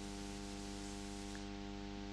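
Steady electrical mains hum in the recording: one low, unchanging buzz with a row of evenly spaced overtones.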